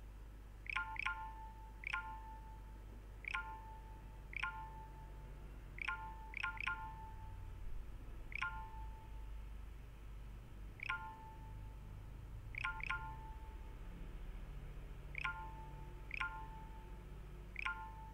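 About fifteen short electronic notification chimes from a computer or phone, each a quick falling blip that settles into a brief tone. They come at uneven gaps of one to two seconds, some in quick pairs, over a faint steady low hum.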